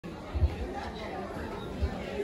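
Indistinct chatter of an audience in a hall, with a couple of short low thumps, one about half a second in and one near the end.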